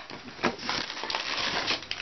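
Plastic Gushers fruit-snack pouch crinkling and crackling as it is handled, a dense run of small crackles starting about half a second in.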